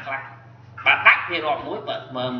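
A man's voice lecturing. He pauses briefly, then speaks again about a second in, over a steady low hum.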